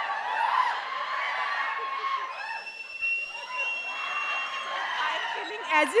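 A group of people laughing and chattering together, several voices overlapping, with a thin steady high tone heard for about two seconds in the middle. Near the end a man speaks loudly into a microphone.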